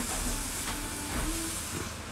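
Steady hiss of background noise with a few faint short tones underneath.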